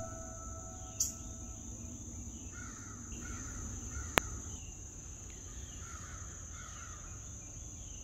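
Faint outdoor morning ambience: a steady high insect drone with a few distant bird calls in the middle. Two short clicks, the sharper one about four seconds in.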